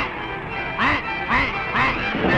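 Cartoon duck quacking four times, short rising-and-falling quacks about half a second apart, over music.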